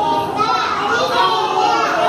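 Young children's voices, several speaking or calling out at once.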